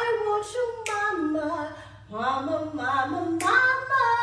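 A woman's voice singing unaccompanied, long notes that hold and slide in pitch, pausing briefly halfway. A few short sharp sounds cut in, about a second in and again near the end.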